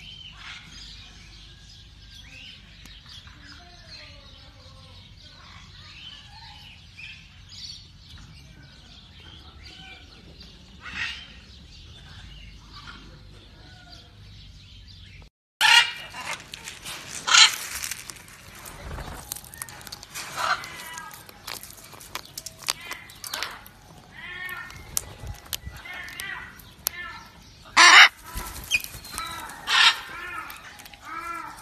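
Pet parrots and other birds calling. Faint chirps and twittering fill the first half. After a sudden break about halfway through come louder squawks and calls, broken by several sharp clacks.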